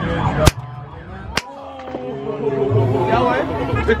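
Two sharp shots from a fairground ring-shooting toy gun, the first about half a second in and the second about a second later, over background music and chatter.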